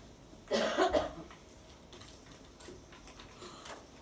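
A person coughs once, about half a second in. After it come a few faint strokes of a dry-erase marker on a whiteboard.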